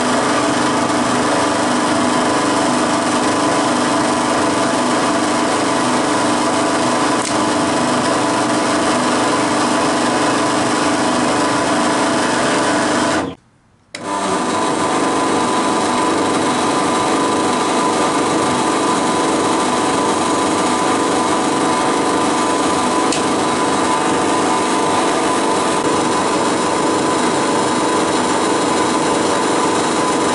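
Drill press running steadily as it drills the corner holes through a plastic cover plate. The sound drops out for about half a second about thirteen seconds in.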